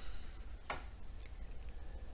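Quiet room tone with a steady low hum, broken by two clicks: one at the start and a sharper one less than a second in.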